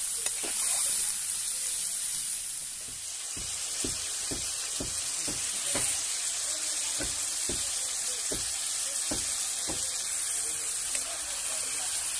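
Pork pieces sizzling in hot fat in a black iron wok, turned with a perforated metal spatula. A steady sizzle runs throughout, and from a few seconds in the spatula scrapes against the wok about twice a second.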